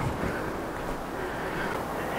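Gale-force wind blowing outside, heard as a steady noise.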